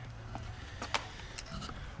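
Several light clicks and knocks of tools and metal parts being handled, the sharpest about a second in, over a faint low hum.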